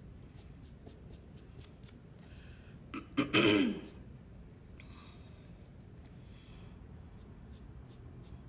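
A woman briefly clears her throat, one short sound falling in pitch about three seconds in, over quiet room tone with faint scattered clicks.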